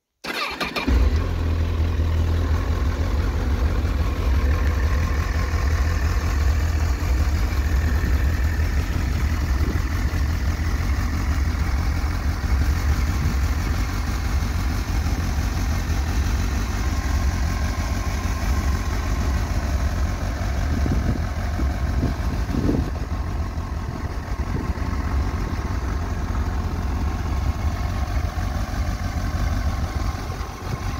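2008 Honda CBF1000 inline-four motorcycle engine started on the electric starter, catching at once and settling into a steady idle. A few faint knocks a little past the two-thirds mark.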